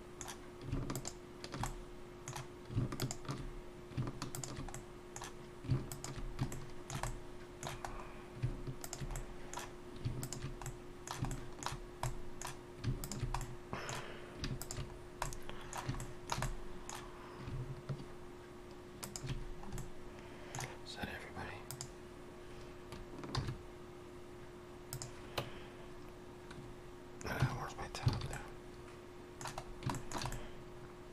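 Computer keyboard keys and mouse buttons clicking irregularly in quick clusters, over a steady faint hum.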